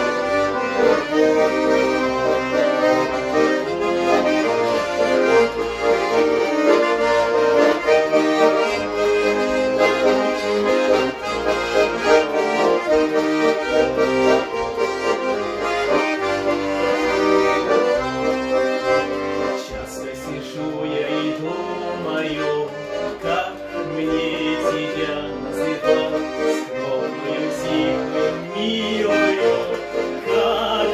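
Bayan and garmon playing together in an instrumental passage of a Russian folk-style song: a melody over a bass line that changes in steps. The playing grows a little softer about twenty seconds in.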